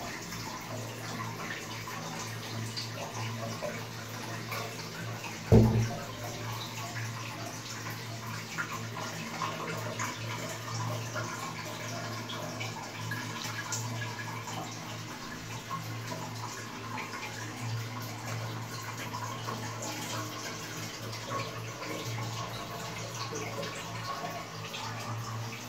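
Low-level Elan toilet cistern filling with a steady rush of water through its inlet valve after a flush. There is a single knock about five and a half seconds in.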